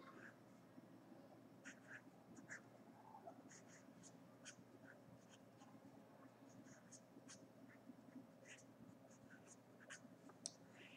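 Faint strokes of a felt-tip marker writing on paper: many short, high-pitched scratches and squeaks, each a second or less apart, as numbers and letters are written.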